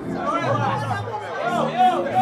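Several voices talking and calling out over one another in a crowd, none of them clear, with music low underneath.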